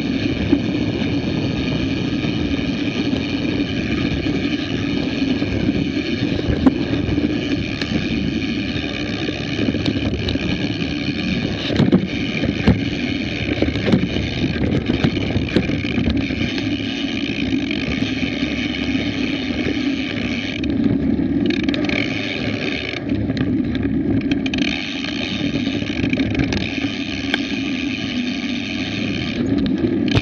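Mountain bike riding down a dirt forest trail, heard from a bike-mounted action camera: steady tyre rolling noise and rattle with a continuous high whirr over it, and occasional small knocks from roots and rocks. The high whirr cuts out briefly twice near the end.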